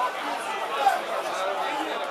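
Football spectators in the stands chattering, several voices talking over one another in the stadium crowd.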